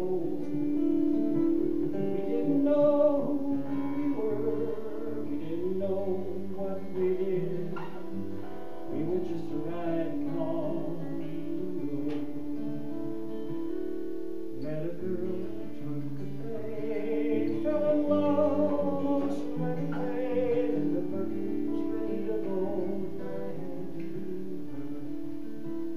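Acoustic guitar strummed and picked through a Solo Amp column PA, playing a folk song, with a man's voice singing at times.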